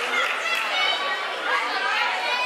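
Crowd chatter: many voices talking and calling out at once.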